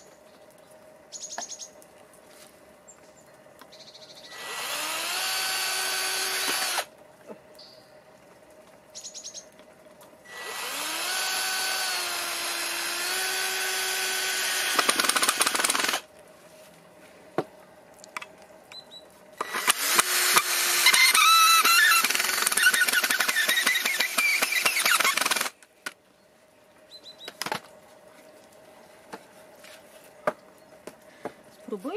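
Cordless drill driving screws into wood in three runs of a few seconds each, the motor whine rising in pitch as it spins up. The last and longest run is rougher, with rapid clicking.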